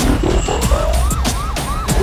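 Police siren in its yelp mode: quick rising-and-falling wails, about four a second, over a deep steady low rumble.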